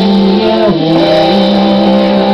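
Live rock band playing with electric guitars and drums: held guitar notes, one of them sliding down in pitch just under a second in before the band settles on a new chord.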